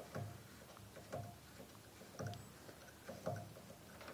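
Faint handling noise as a new E string is wound into a double bass peg box: soft knocks about once a second.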